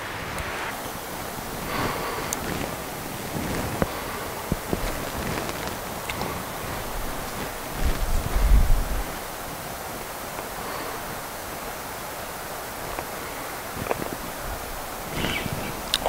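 Steady outdoor rush of wind and flowing creek water, with a low rumble of wind buffeting the microphone about halfway through and a few faint ticks.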